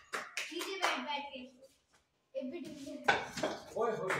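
People talking in short bursts, with a pause near the middle and a single sharp knock about three seconds in.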